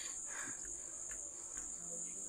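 Crickets chirping in a steady high-pitched trill in the background.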